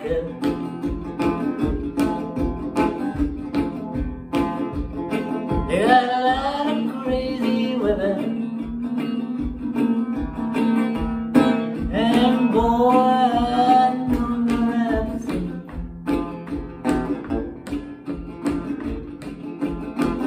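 Metal-bodied resonator guitar played in a blues rhythm over a steady low pulse, with a man singing two phrases over it, about six and twelve seconds in.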